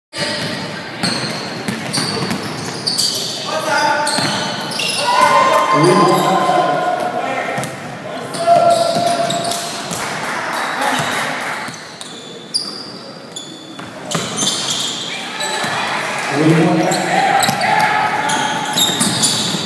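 Live basketball game in an echoing gym: the ball bouncing on the hardwood floor, sneakers squeaking, and voices shouting, loudest around five to seven seconds in and again near the end.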